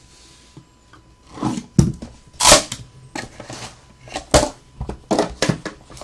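Trading-card boxes being handled and set down on a table: a series of knocks and scrapes, the loudest a scrape about two and a half seconds in.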